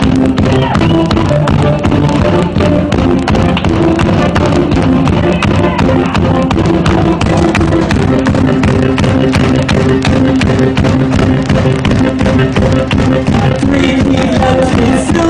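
Loud live music from a keyboard-and-drums duo: a drum kit played fast and hard over sustained keyboard chords.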